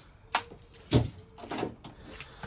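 A few sharp knocks and thumps, one just after the start and a louder one about a second in, then softer taps, over a faint steady hum.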